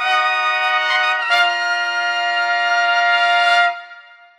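Trumpet holding one long, bright note that shifts slightly in pitch about a second in, then stops shortly before the end with a brief ring-out.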